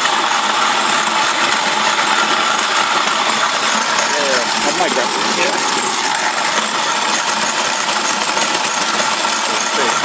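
Corona-style grain mill driven by an old 18 V cordless drill motor running on 12 V in low gear, grinding grain with a loud, steady noise.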